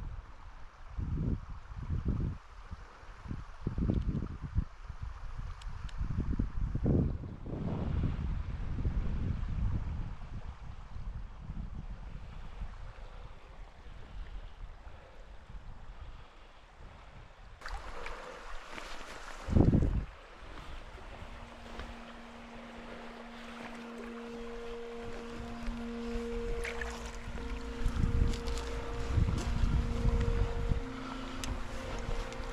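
Water sloshing and irregular low thumps, with wind rumble on the microphone, as a floating blind is waded through shallow water. About two-thirds of the way in, soft background music with long held notes comes in.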